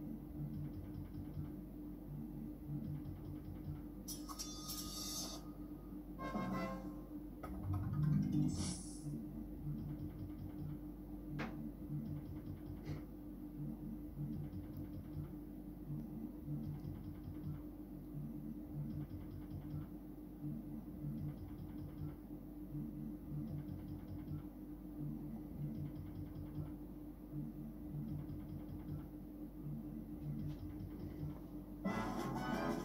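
Merkur Gladiators slot machine playing its looping game music while the reels spin, with a few louder effect sounds about four to nine seconds in, including a short rising sweep near the loudest point.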